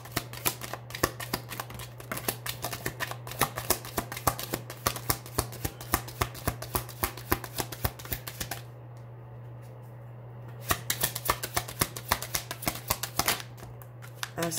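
A deck of oracle cards being hand-shuffled: a rapid run of card flicks and riffles that stops for about two seconds just past the middle, then starts again. A steady low hum sits underneath.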